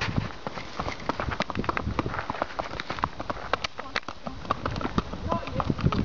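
Hooves of a gaited horse on an asphalt road: a quick run of sharp clip-clop footfalls.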